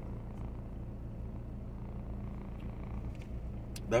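Steady low hum of a vehicle idling, heard from inside the cab.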